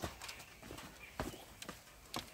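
Quiet footsteps on a dirt path: a few scattered, irregular soft steps.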